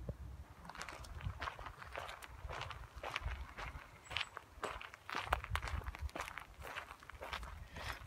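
Footsteps on dry leaf litter and twigs along a forest path, at a steady walking pace.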